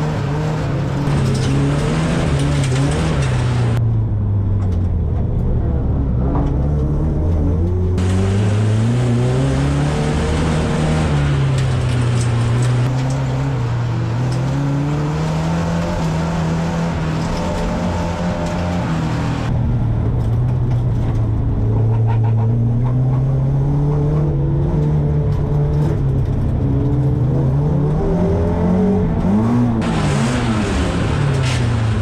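Folk-race car engine heard from inside the cabin, revving up and dropping back again and again as the car accelerates and lifts through the corners, with road noise underneath. The engine is pulling evenly after its spark plugs and ignition coil were changed, injectors cleaned and timing adjusted.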